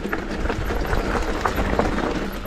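Mountain bike rolling fast down rocky dirt singletrack: the tyres crunch over stones and roots, and the bike rattles with many irregular small clicks and knocks. A steady low rumble of wind buffets the microphone underneath.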